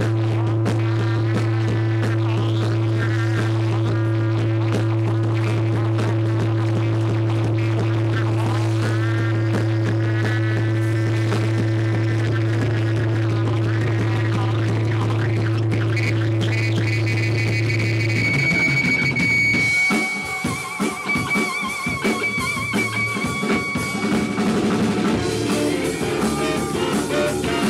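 Live jazz-rock band music: an electric guitar plays bending melodic lines over a steady low drone. About two-thirds of the way in the drone stops and a long high note is held with vibrato over the fuller band, with trumpets playing near the end.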